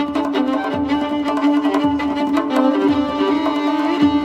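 Solo violin, tuned D–A–D–G, playing a chaharmezrab in the Persian Afshari mode: a rhythmic melody over a steadily held drone note. Under it a tombak goblet drum gives deep strokes about once a second.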